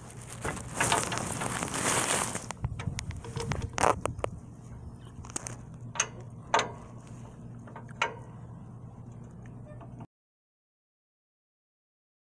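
Metal clinks and rustling handling noise from hand tools and parts being worked under a go-kart: a few sharp, separate clanks, with a steady low hum underneath. The sound cuts off abruptly about ten seconds in.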